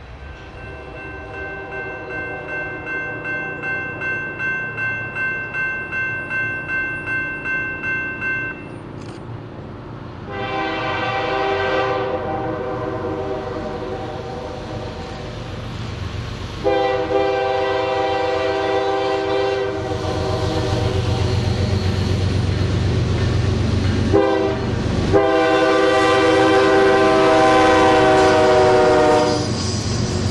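A bell rings about twice a second for the first eight seconds, as at a grade crossing, while a double-stack container train rolls by. Then a Norfolk Southern diesel locomotive blows its horn in the grade-crossing pattern (long, long, short, long) as it approaches, its engine rumble growing louder.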